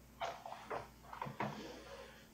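Faint room noise with three or four short, quiet knocks.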